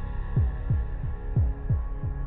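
Heartbeat sound effect in a suspense score: double beats about a second apart, each a deep thump that drops in pitch, over a steady low drone.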